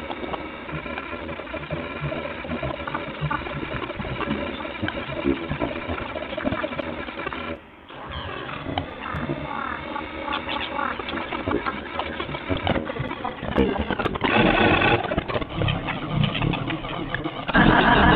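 Chaotic, glitchy electronic texture generated live by the Fragment spectral synthesizer: many held tones and pitch glides over a crackling, grainy noise bed, with a delay echoing through it. It drops out briefly about eight seconds in, and louder noisy surges come near fourteen seconds and at the end.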